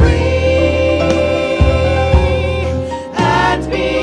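Gospel praise song: several women's voices singing together in harmony, accompanied by piano with sustained low bass notes.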